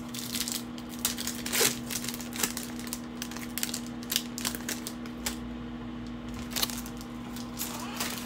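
A foil Panini Optic basketball card pack being torn open and crinkled by hand, then the stack of cards being handled, as a string of light clicks and rustles over a steady low hum.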